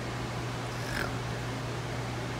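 A brief, high-pitched animal whimper about a second in, over a steady low hum.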